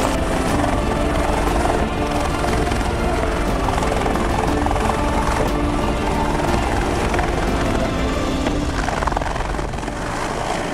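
Military utility helicopter's rotor and turbine running at lift-off power as it rises into a hover and turns away, a steady loud beat and whine, with background music laid over it.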